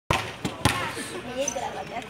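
Three sharp thumps in the first second, then a group of children talking over one another.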